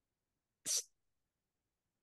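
A single short breath or sniff about two-thirds of a second in, otherwise silence.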